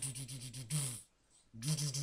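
A man vocally imitating a sound effect: a buzzing, hissing voice sound that pulses about eight times a second, in two bursts with a short break near the middle.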